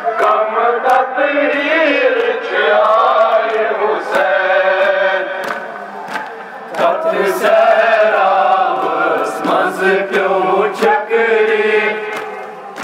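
A group of men chanting a Kashmiri noha, a Shia lament, with melodic rising and falling lines. Sharp palm slaps of chest-beating (matam) land about once a second under the chant.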